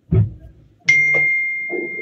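A brief soft sound, then about a second in a white ceramic cup clinks as it is set down and rings with one clear tone that fades slowly.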